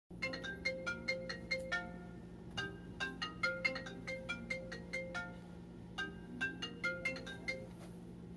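Smartphone ringtone: a bright, chiming melody of quick notes, repeating in three phrases with short gaps between them.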